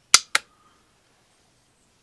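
Two sharp clicks about a fifth of a second apart near the start, then near silence.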